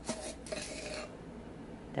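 A metal measuring spoon clinking and scraping as it scoops baking powder, a few light strokes in about the first second.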